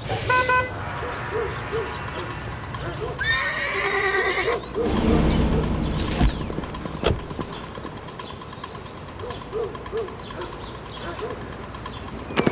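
A horse neighing: a wavering whinny about three to four seconds in.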